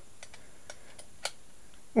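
A few faint, brief clicks and taps from handling a Bosch IXO cordless screwdriver and a hex-shank drill bit, with one sharper click a little past halfway.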